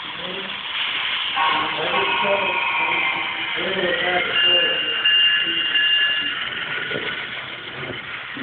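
Sound-equipped model diesel locomotive sounding a multi-tone air horn through its small speaker: two long blasts, the second higher-pitched. Voices talk in the background.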